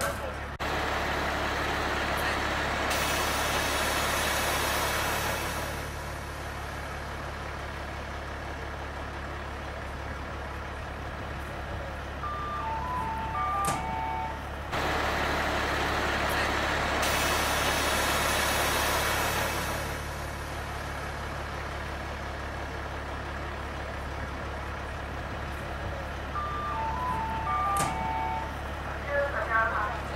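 Ganz L45H diesel-hydraulic narrow-gauge locomotive standing at idle with a steady low hum. A long hiss of released air comes near the start and again about halfway through, and a short electronic tune of a few notes sounds twice.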